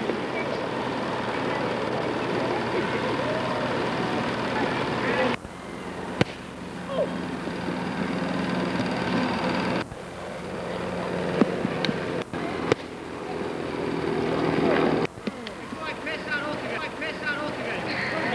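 Outdoor background noise with faint, indistinct voices. The sound breaks off abruptly several times, each break a sudden jump in level.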